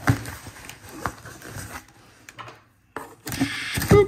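Box cutter slicing along the packing tape of a cardboard box, with clicks and knocks from the cardboard being handled; a scraping cut in the last second ends in a loud knock.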